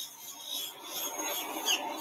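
Steady outdoor background noise, an even hiss without any distinct event.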